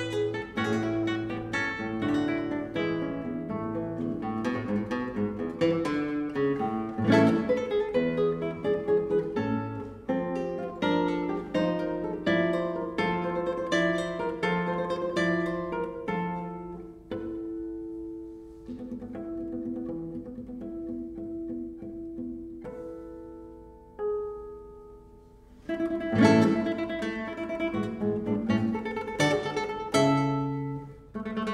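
Solo classical guitar played fingerstyle: quick, busy runs of plucked nylon-string notes, thinning to a quieter, slower passage past the middle, then growing loud again near the end.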